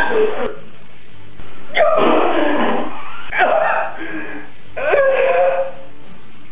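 A man moaning in distress: three drawn-out moans with a wavering pitch, separated by short pauses.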